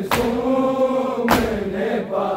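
Men's voices chanting a noha refrain in unison. The chant is punctuated by two loud, synchronized strikes of hands on bare chests (matam), one at the start and one about a second and a quarter later, keeping the beat of the lament.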